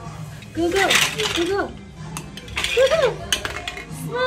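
Large plastic toy building blocks clicking and knocking together as a toddler handles them: a few short, sharp clicks.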